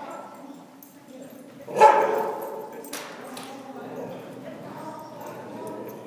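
A dog running an agility course gives one loud bark about two seconds in, with softer voices around it.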